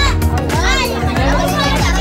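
Music with a steady beat and a crowd of children's voices shouting and calling over it.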